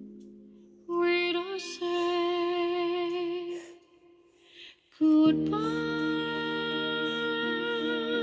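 A woman singing a slow ballad with instrumental backing: long held notes with vibrato, a near-silent break of about a second near the middle, then a fuller sustained passage.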